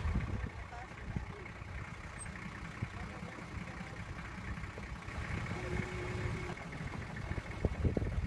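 Vehicle engine and road noise heard from inside a moving car, a steady low rumble with knocks and jolts from the rough surface, heavier near the end.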